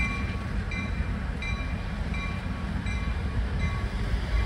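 A railroad bell ringing in even strokes, about three every two seconds, over the low rumble of a train.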